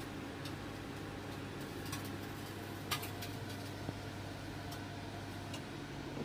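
Samsung convection microwave oven running a grill cooking program with a steady low hum, with irregular sharp clicks scattered through it. Near the end the hum's pitch shifts slightly.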